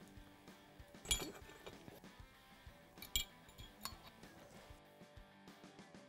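A few light metal clinks over faint background music: steel tools, a valve spring compressor and a magnet, touching the valve springs and keepers on an aluminium cylinder head. The sharpest clink is about a second in, another comes about three seconds in, and a smaller one follows.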